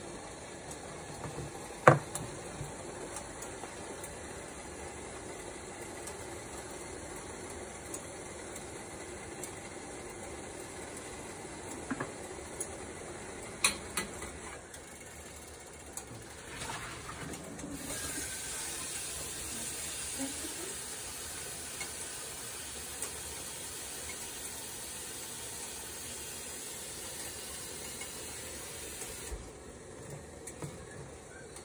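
Water heating toward the boil in an open aluminium pressure-cooker pot on a stove, giving a steady soft hiss of sizzling. There are a few sharp clicks, the loudest about two seconds in. A brighter hiss joins about eighteen seconds in and cuts off suddenly shortly before the end.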